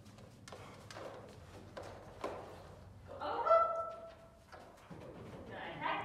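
A dog's paws give a run of soft thumps as it runs out to an agility A-frame. About three seconds in, a woman calls out one long, drawn-out command that rises and is then held, with a shorter call near the end.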